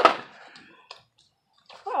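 A breathy burst of a woman's voice at the start that fades away, a couple of faint clicks, a short hush, then a woman's voice saying "Oh" near the end.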